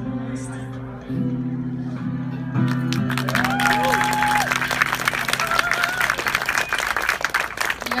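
Acoustic guitar playing the closing notes of an instrumental piece, the last chord left ringing. About three seconds in, the audience breaks into applause with a few cheers, which runs on as the chord dies away.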